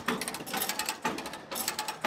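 Hand-cranked trailer winch ratcheting as its cable pulls a car up onto the trailer: a rapid run of pawl clicks that swells and eases with the turns of the crank.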